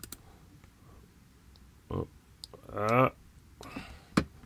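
Computer mouse clicking a few times. A man makes two short wordless vocal sounds, one about two seconds in and a longer, louder one just before the three-second mark.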